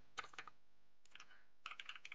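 Faint computer keyboard typing: a few quick keystrokes just after the start and another short run near the end.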